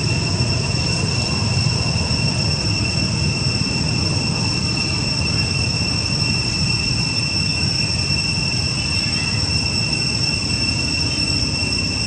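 Steady outdoor background: a constant high-pitched whine holding one pitch throughout, over a low rumbling noise.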